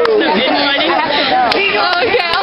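Several young people's voices chattering and calling out over one another, with a sharp click about one and a half seconds in.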